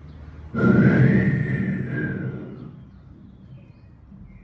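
A man's breathy blown whistle close to a microphone, imitating wind forced through a small hole in a wall: one long note that starts about half a second in, rises slightly, then slowly falls and fades out.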